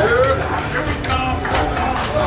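A group of young men's voices chattering and calling out to each other in excited celebration.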